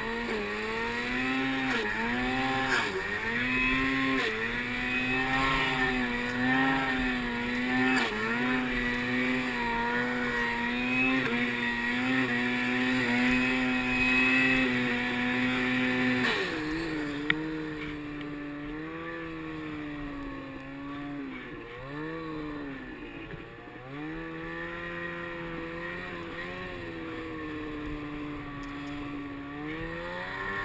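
Snowmobile engine running hard through deep powder snow, its pitch dipping and climbing back every second or two as the throttle is worked. A little past halfway the revs and loudness drop, and it runs lower with further dips.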